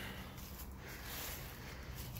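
Faint outdoor background noise: a steady, even hiss over a low rumble, with a few soft ticks near the end.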